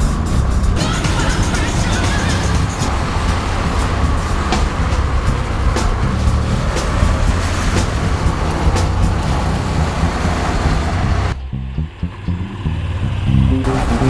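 Background music laid over the running sound of a Honda NC750D Integra's 745 cc parallel-twin engine and wind noise as the scooter rides through curves. The ride noise drops out for about two seconds near the end, leaving only the music.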